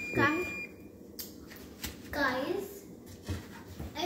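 A kitchen cooking timer sounding one steady high-pitched tone that cuts off about half a second in, the signal that the French toast's time is up. A child's voice calls out briefly twice, near the start and around the middle.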